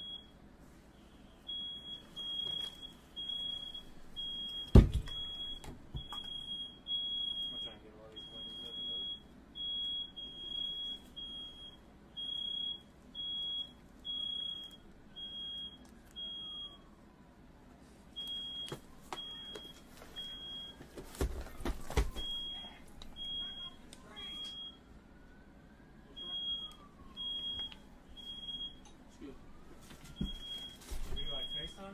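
Smoke alarm beeping: a high-pitched beep repeated over and over with short gaps, set off by firework smoke in the room. A loud thump comes about five seconds in, and two more a little after twenty seconds.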